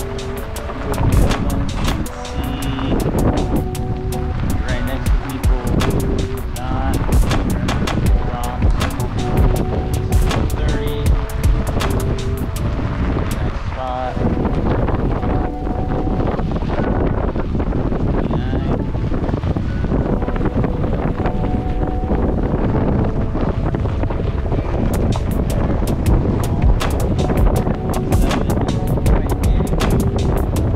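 Background music with held and wavering notes, over wind rumbling and crackling on the microphone.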